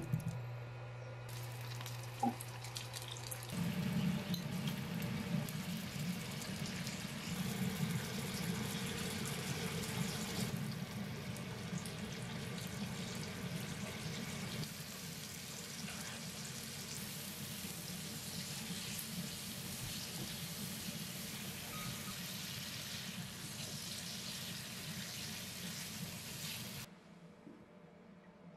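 Potato chunks and boiled octopus sizzling in olive oil in a nonstick frying pan, a steady frying hiss that grows louder a few seconds in and cuts off suddenly near the end.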